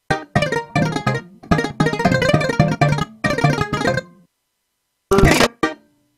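Sampled bouzouki from a software instrument playing a run of plucked E-flat major chords for about four seconds. A short, bright burst of sound follows about five seconds in.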